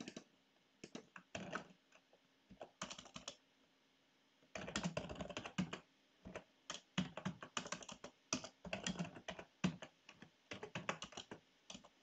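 Computer keyboard typing shell commands: short runs of key clicks, a pause of about a second a little over three seconds in, then a denser, steadier run of keystrokes.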